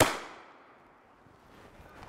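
A single sharp bang, with a tail that rings out and fades over about a second, as a white illumination flare is fired to light up and unsettle the hiding soldiers.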